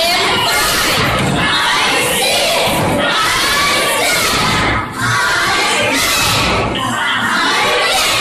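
A class of young children shouting together, loud and continuous, with a brief dip about five seconds in.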